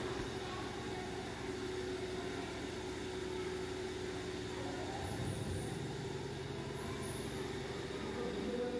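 Steady low room noise, a hum and hiss, with a pedestal fan running; a faint steady tone holds for the first few seconds.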